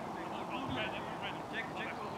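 Distant voices across an open field, with a quick run of short, high bird calls through steady outdoor background noise.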